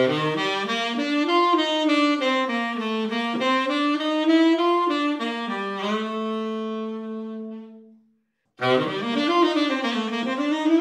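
Tenor saxophone playing a bebop II–V–I lick: a quick run of eighth notes through the bebop scale over the G7, with its chromatic F-sharp passing note, resolving to a long held note that fades out. After a short pause the lick starts again near the end.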